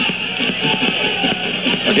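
Music and steady crowd noise under an AM radio football broadcast taped off the air onto cassette.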